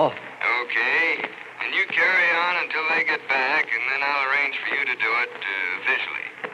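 A man's voice speaking over a telephone line, thin and lacking low tones.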